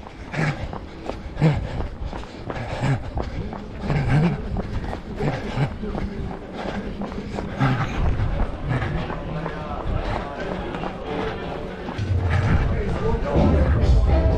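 Running footsteps on a paved street in a quick, even rhythm, with voices around them. Music comes in near the end and gets louder.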